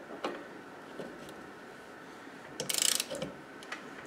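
Ratcheting torque wrench with a socket turning a bicycle rear-suspension pivot bolt. There are a few single clicks, then a quick run of ratchet clicks a little before three seconds in.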